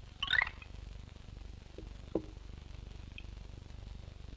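Sparse cartoon sound effects over the steady hum of an old film soundtrack: a brief squeaky, clinking burst just after the start and a single short knock about two seconds in.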